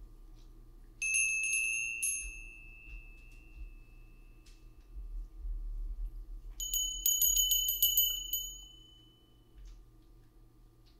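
Small high-pitched metal bell or chime rung in two bursts of quick strikes, about a second in and again near seven seconds, each left to ring out; the second burst is slightly higher in pitch.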